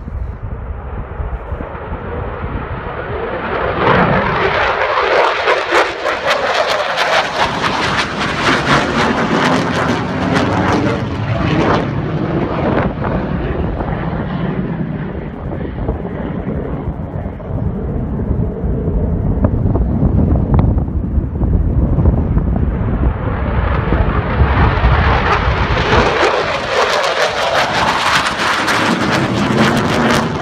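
Fighter jet flying past low: its engine noise builds over the first few seconds, peaks loud for several seconds and eases into a lower rumble as it recedes. The jet noise swells loud again near the end.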